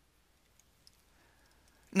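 Near silence with a few faint clicks: a stylus tapping on a pen tablet while a number is written.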